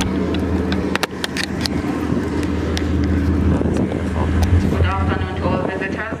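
Bus engine idling: a steady low hum that eases off about five seconds in, with a few sharp clicks early on and brief voices near the end.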